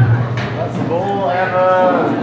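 A person's voice giving one long, drawn-out call, a moo-like 'ooo'. It begins a little under a second in, rises slightly in pitch, then holds for about a second, through a live hall's sound system.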